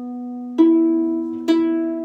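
Concert pedal harp: a lower note rings on, then two neighbouring strings, set by the pedals to the same pitch, are plucked one after the other about a second apart. They sound one clean, matching note with no clash between them.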